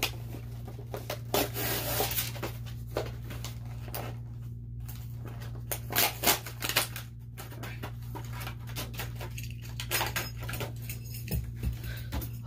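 Scattered clicks, knocks and light rustling from objects being handled, typical of getting toys out of their packaging, over a steady low electrical hum.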